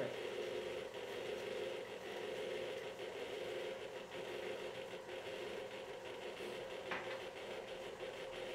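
Electric tilt-head stand mixer running steadily at low speed, beating butter and sugar together (creaming) in its metal bowl: an even motor hum with the whir of the beater.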